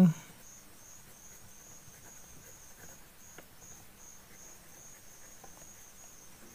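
A steady, evenly pulsed high chirping, typical of an insect, repeating about two or three times a second. Faint scratches and ticks of a ballpoint pen writing on paper run underneath.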